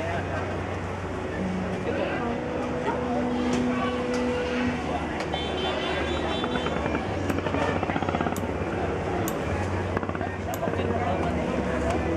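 Boat engines running with a steady low drone, under the indistinct chatter of people nearby.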